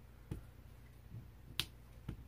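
A few short, faint taps of a small clear acrylic-mounted stamp on an ink pad as it is inked, the sharpest a crisp click just before the end.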